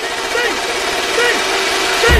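Background music: a melodic line with sliding notes over a rising whoosh, the music gradually building in loudness.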